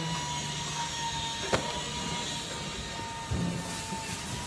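Pit garage background noise: a steady mechanical drone with a thin, constant high whine. One sharp click comes about a second and a half in.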